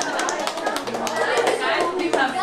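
Indistinct voices in a small room with scattered sharp taps through the first part.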